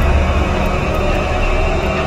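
A steady, low rumbling drone from a horror film score, with faint held tones above the rumble and no distinct hits.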